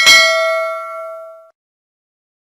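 Notification-bell sound effect: a single bright ding of several ringing tones that fades away over about a second and a half.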